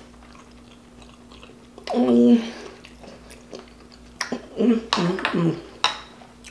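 Close-miked chewing of a mouthful of rice, with short closed-mouth "mm" hums of enjoyment about two seconds in and again around five seconds, and a few sharp mouth clicks.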